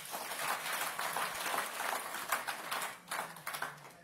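Audience applauding, a dense patter of hand claps that dies away after about three seconds.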